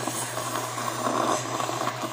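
A child slurping noodles, sucking them in through the lips in one long continuous slurp that stops near the end.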